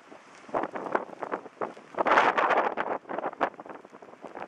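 Wind buffeting the microphone in irregular gusts and crackles, loudest about two seconds in.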